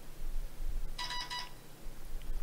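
A smartphone's message-notification chime for an incoming Telegram message: one short, bright electronic chime about a second in, lasting about half a second.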